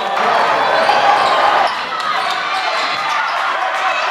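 Live sound of a high school basketball game in a gym: a ball bouncing on the hardwood court amid the voices of players and crowd. The sound changes abruptly a little under two seconds in.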